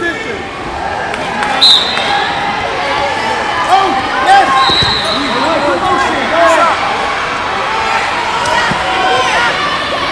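Many overlapping voices calling and shouting across a large, echoing wrestling hall, with dull thuds on the mats. A short high whistle blast sounds about a second and a half in and another around five seconds.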